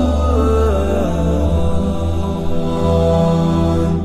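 Vocal-only nasheed: voices holding long, sustained notes over a steady low droning hum, the melody stepping down in pitch early on and then settling.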